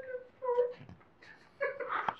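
A woman crying as she tries to read aloud: short, high-pitched whimpering cries, three in a row with quiet gaps between.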